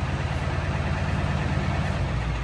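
Ford 7.3 Powerstroke V8 turbo-diesel running steadily at a raised high idle, set by the tuner's high-idle tune, heard from inside the cab.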